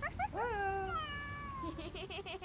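Cartoon cat's meow: a few short chirps, then one long meow that rises and slowly falls in pitch.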